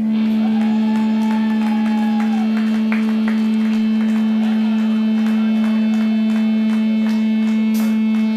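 A live metal band opening a song: one loud, steady droning note held throughout, with a wavering higher note over it in the first couple of seconds and light ticking hits scattered through.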